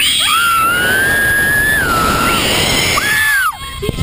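Riders screaming as the Slingshot reverse-bungee ride catapults them upward, with wind rushing over the microphone. One long, high scream holds for about two seconds, then a second, shorter scream comes about three seconds in.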